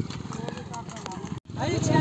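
Men's voices from a crowd over a low motorcycle engine running. The sound drops out sharply about one and a half seconds in and comes back with the engine running steadily and men talking louder.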